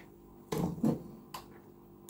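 Brief handling noises as objects are put down and a glass bottle is picked up: two short knocks or rustles about half a second and a second in, then a faint click, with low room quiet between.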